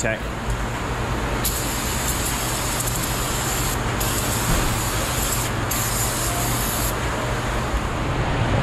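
Aerosol spray can hissing in three bursts with short breaks between them, over a steady low shop hum.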